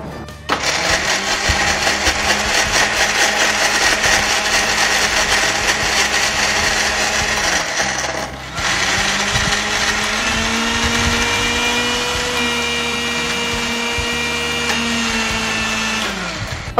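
Electric mixer-grinder running with a steady whine, grinding grated coconut with a little water in its stainless-steel jar to make coconut milk. It stops briefly about eight seconds in, then starts again.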